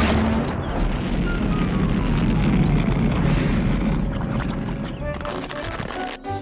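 Cartoon rocket sound effect: a loud rushing rumble that slowly dies away, with a faint falling whistle about a second in.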